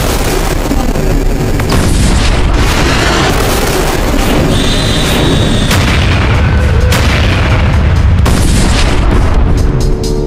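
Loud explosion sound effects over music: a dense rumble with a few sharp bangs along the way.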